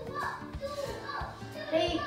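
Children's voices, unclear exclamations and chatter, over background music.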